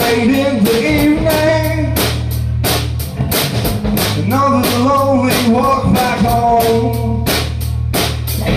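Live rock band playing: electric bass, electric guitar and a drum kit keeping a steady beat, with a man singing the melody into a microphone.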